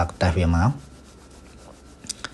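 A man's voice speaks briefly, then gives way to a faint, steady hiss of background noise.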